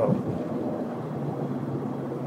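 Steady road noise with a low engine hum from the 2022 Chevrolet Silverado 1500, a 5.3 L V8 pickup, on the move while towing a boat on a tandem trailer.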